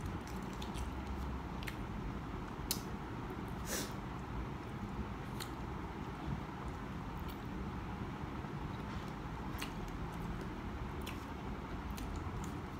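Quiet chewing and mouth sounds of a person eating a hard-boiled egg, with a few short sharp clicks scattered through, over a steady room hiss.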